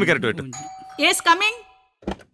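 A doorbell chime rings with steady tones for about a second and a half, starting about half a second in.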